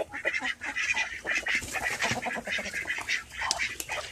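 Poultry calling in a rapid run of short calls, several a second at first and then more irregular, from birds being grabbed and handled in a pen.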